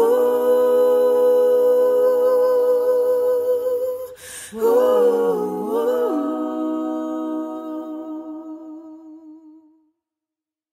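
A woman's voice singing a wordless, hummed closing line, unaccompanied. She holds one long note, takes a breath about four seconds in, then sings a short phrase that drops to a lower note with vibrato and fades away just before the end.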